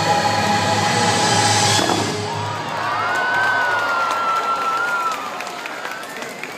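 The castle light show's soundtrack music plays and ends on a final chord about two seconds in. Then the crowd cheers, with one long wavering whoop rising over it.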